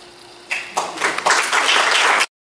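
Audience applauding, starting about half a second in and swelling.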